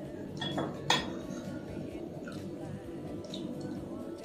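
A metal spoon clinks once against a dish about a second in, a sharp tap with a short ringing tail.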